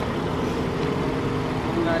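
A motor vehicle engine idling with a steady hum, with brief voices over it.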